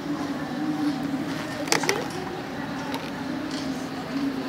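A steady low droning hum, with two sharp clicks a little before halfway through.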